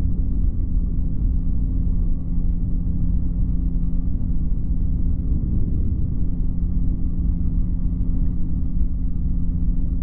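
Flexwing microlight's engine and propeller droning steadily in flight, with a deep rumble underneath.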